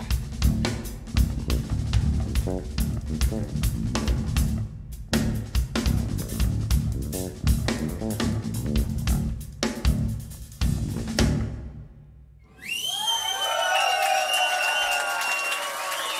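Live drum kit played fast and dense, snare, kick and cymbal hits over a bass guitar line, dying away about eleven seconds in. Then an audience cheers and whistles.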